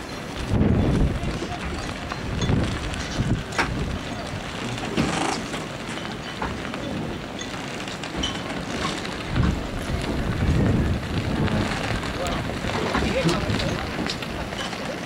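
Wind buffeting the microphone in repeated low gusts, over faint talk from people in the background.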